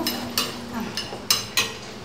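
Cutlery clinking against plates and glassware at a meal table: three or four short, sharp clinks spread through the two seconds, a couple of them briefly ringing.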